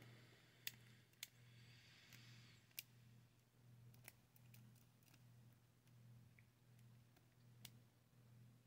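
Near silence: a lock pick working the pins of a brass lock cylinder, giving a handful of faint clicks spread across a few seconds, over a low steady hum.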